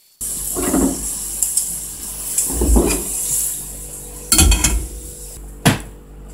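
Pumpkin wedges sizzling in oil in a frying pan, with metal tongs scraping and clattering against the pan four times as the pieces are turned, ending with a sharp tap.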